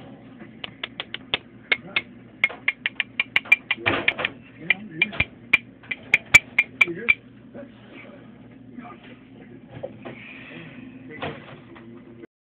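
Sharp ticks against the upturned glass jar that holds a scorpion, coming about three or four a second for several seconds and stopping about seven seconds in, over a faint steady low hum.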